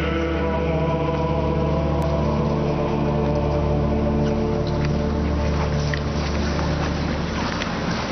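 Pipe organ holding slow sustained chords over a steady deep bass note, the chords changing every couple of seconds.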